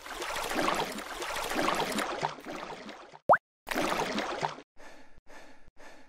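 Wet splashing and sloshing sound effects for a fish in a muddy puddle, with a single sharp plop about three seconds in, then fainter quick wet pulses.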